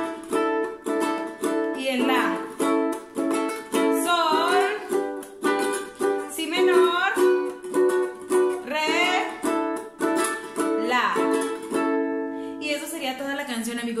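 Ukulele strummed through a G, B minor, D, A chord progression in a down-up-mute-down-mute pattern, the muted strokes giving short percussive chops between ringing chords. A woman's voice sings along in short phrases.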